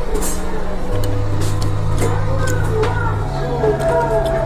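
Background music with held bass notes and a light melody; the bass changes pitch about a second in and again near the end.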